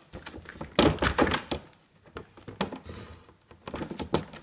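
A clear plastic ruler being shifted and set down on a drawing sheet on a desk, giving a run of short knocks and light taps, most of them about a second in, with a faint scratchy stroke near three seconds.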